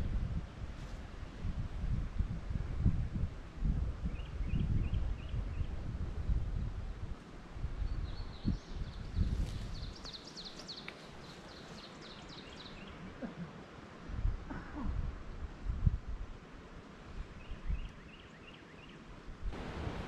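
Songbirds singing outdoors: a short run of quick chirps, a longer song of repeated high notes around the middle, and another run of chirps near the end. Under them, irregular low rumbling on the microphone during the first half, quieter in the second.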